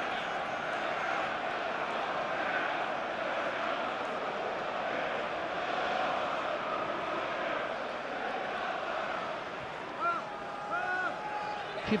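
Football stadium crowd noise: many voices blended into a steady wash of sound, with a few short pitched calls standing out near the end.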